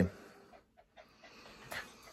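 A small dog panting faintly, with a soft tick or two.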